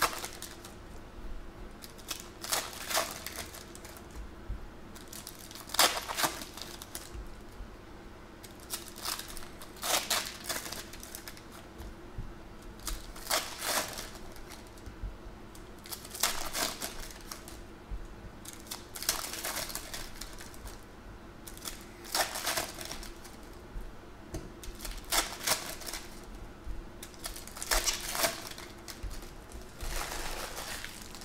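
A foil pack of 2014 Panini Prizm football trading cards is handled and opened. The wrapper crinkles and the glossy cards slide and snap against each other as they are flipped through, in short crisp bursts every few seconds.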